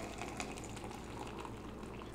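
Boiling water from an electric kettle pouring in a thin stream into a glass beaker, a faint steady splashing.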